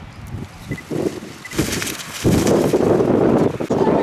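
Rustling of a black plastic bin bag being handled. About halfway through, a loud, steady rush of outdoor noise starts, like wind on the microphone.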